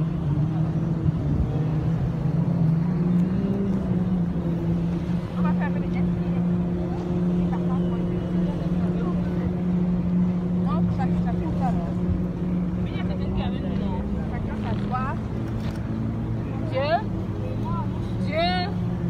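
A motorboat's engine running with a steady low drone under the noise of the hull on the water, the pitch shifting a little a few seconds in and again about two-thirds through.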